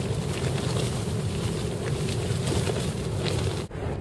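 Strong wind buffeting the microphone, a steady low rumble that dips briefly near the end.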